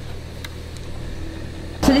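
Nespresso milk frother switched on with a click of its button, then a faint steady hum as it runs. Near the end a louder steady whir of a Nespresso coffee machine brewing cuts in suddenly.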